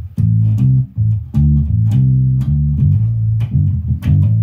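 Electric bass guitar with a foam string damper on the strings, played in a quick run of short, muted low notes, each with a sharp pluck at its start.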